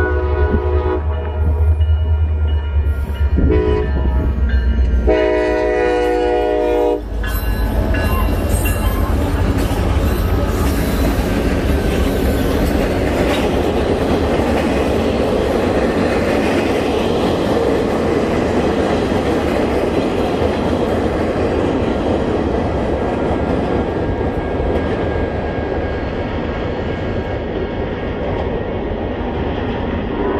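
Freight train passing a grade crossing: several diesel locomotive horn blasts over the locomotives' heavy low engine rumble, ending about seven seconds in, then the steady rolling noise of freight cars on the rails.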